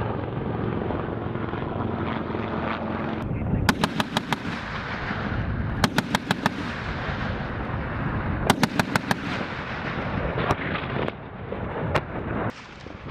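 Three short bursts of automatic gunfire, each about five or six rapid shots, a couple of seconds apart, with a few single shots near the end. Under them is the steady noise of an AH-1Z Viper attack helicopter's rotors and engines.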